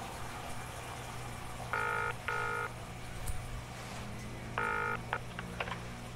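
Telephone ringback tone in a double-ring pattern: two short tones close together, heard twice about three seconds apart, the sign that the call is ringing at the far end. A low steady hum runs under it, and a few clicks come near the end.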